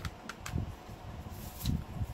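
Plastic CD jewel case being handled: a few light clicks and rustles over a faint steady room hum.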